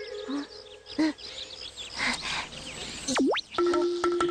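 Cartoon sound effects over light chirping birds: a few short blips, then a fast slide-whistle-like swoop down and straight back up about three seconds in, followed by a steady tone that starts just before the end.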